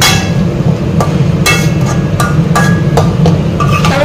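Metal spatula knocking and scraping against an aluminium wok while stir-frying, a run of short clanks with a brief metallic ring, about two to three a second, over background music.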